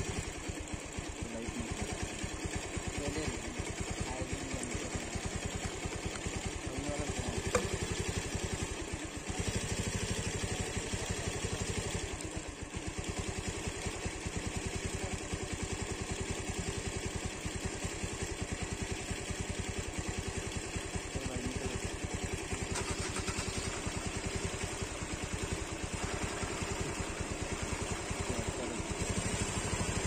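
Car engine idling steadily, a low, even run of firing pulses.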